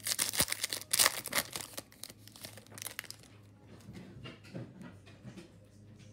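Shiny wrapper of a trading-card pack being torn open and handled, with loud crackling over the first second and a half. Softer rustling and scraping follow as the stack of cards is worked out of it.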